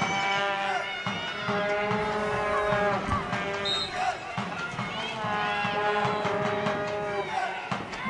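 Several people's voices calling out in long, drawn-out shouts that overlap one another.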